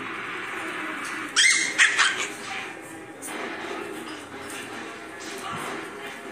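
Pomeranian puppies at play, one letting out a short burst of high, rising yips about a second and a half in.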